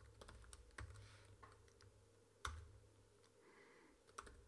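Faint computer keyboard typing: a few scattered key presses, the sharpest one about two and a half seconds in.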